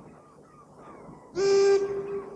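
A boat horn sounding one steady blast, starting about one and a half seconds in.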